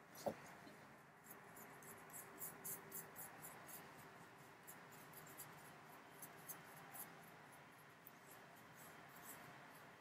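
Near silence with faint, light ticks and scratches of small paintbrushes being worked over a painted statue, most frequent in the first part.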